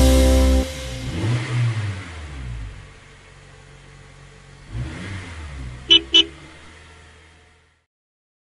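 The last note of the song's music ends under a second in, then a cartoon school-bus sound effect: a low engine sound rising and falling, and two short honks of the horn about six seconds in, before it fades out.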